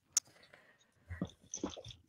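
A dog makes a few short, faint sounds in the second half, after a single click near the start.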